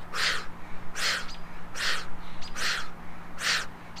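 A man breathing out hard through the mouth in time with push-ups: five short, forceful exhales, a little under a second apart.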